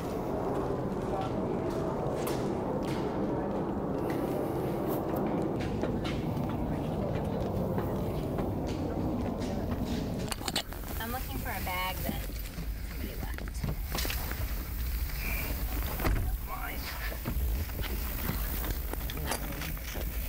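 A steady rumble under the bridge deck. About halfway it gives way to a deeper, buffeting rumble with footsteps knocking on steel stairs and a few indistinct voices.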